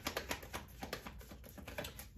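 A deck of tarot cards being shuffled in the hands, a quick run of faint soft clicks and flicks as the cards slide over one another.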